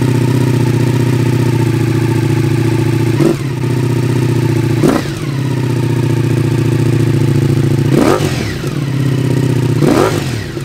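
Ducati Multistrada V4S's V4 engine idling through a full Akrapovic exhaust system, blipped four times, each a quick rise and fall in revs, at about three, five, eight and ten seconds in.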